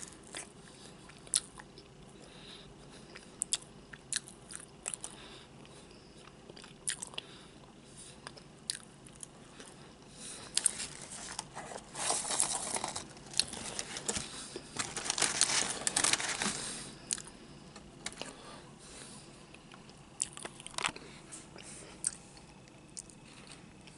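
Close-miked chewing of a fried hush puppy, with sharp mouth clicks scattered throughout. About halfway through come two louder, noisier spells of a few seconds each.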